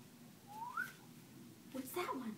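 A short, faint whistle-like squeak rising in pitch, about half a second in. A brief voice sound follows near the end.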